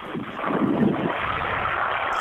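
Steady rush of wind and sea water from a TP52 racing yacht sailing fast downwind, dull in tone, rising about a third of a second in.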